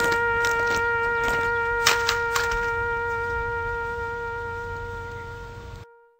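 A wind instrument holding one long note that slowly fades out and stops just before the end, with a few short clicks in the first half.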